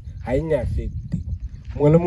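A man speaking into a handheld microphone, with a brief pause in the middle where a low rumble sits under the voice.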